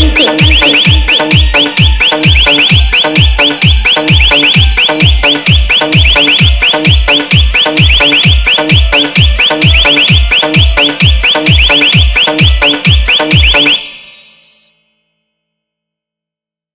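Hard-bass DJ dance track: a steady, fast kick drum with deep bass hits that drop in pitch, about two and a half a second, under a rapid, high-pitched repeating chirp. The music stops about 14 seconds in and dies away to silence.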